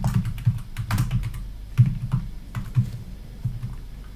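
Typing on a computer keyboard: a run of unevenly spaced keystroke clicks.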